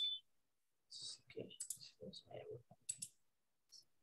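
Faint clicking of a computer mouse, a scatter of soft clicks over about two seconds, picked up by the computer's microphone on a video call. A high steady tone cuts off at the very start.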